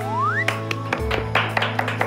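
Background music with held low chords. A short rising whistle-like tone sweeps up in the first half second, then light quick percussive taps follow.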